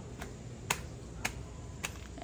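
Footsteps climbing concrete steps: four sharp taps, a little over half a second apart.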